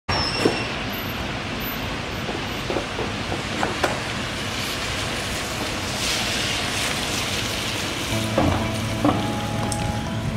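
Steady hiss of rain and wet city street, with scattered small taps of drips; the hiss swells briefly about six seconds in, as a car's tyres go by on the wet road.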